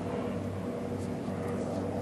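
Steady low drone with a few faint held tones underneath, even throughout, with no distinct knocks or strikes.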